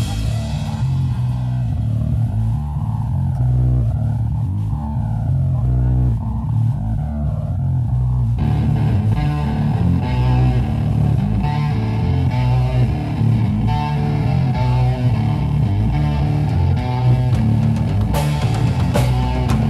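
Live rock band on electric guitar and bass guitar, the drums dropping out at the start and leaving the guitars on their own. About eight seconds in the sound grows fuller and brighter.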